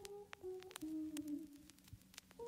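A faint, slow tune of held notes stepping downward, like humming, with scattered sharp clicks over it.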